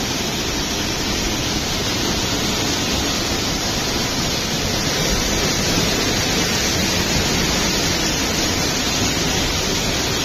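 Small mountain waterfall pouring down a rock face and splashing onto the rocks below: a steady, unbroken rush of water heard up close.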